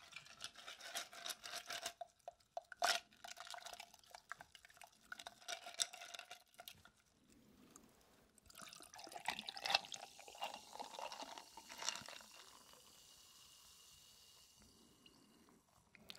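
Ice cubes clinking and rattling against a drinking glass, with one sharp click about three seconds in. Coca-Cola is then poured from a can over the ice, and it ends in a steady soft fizz of carbonation.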